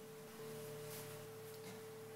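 Faint, steady sine-wave test tone at a single pure pitch with no distortion: the generator's sine passing cleanly through the overdrive pedal with its drive turned down.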